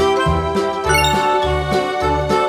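Upbeat background music with a steady bass beat and a bright tinkling chime about a second in.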